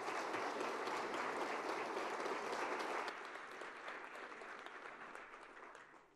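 Audience applauding, steady for about three seconds, then thinning and fading away.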